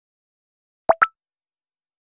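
Two quick pop sound effects about a second in, the second higher in pitch, from an animated like-and-subscribe button being clicked.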